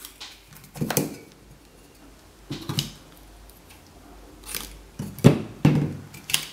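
Clear adhesive tape being pulled off its roll and pressed around a drink can, heard as several short crackling bursts, with two louder handling sounds near the end.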